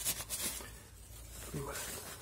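Paper napkin rustling and rubbing as it wipes down an automatic transmission's valve body, crisper in the first half second.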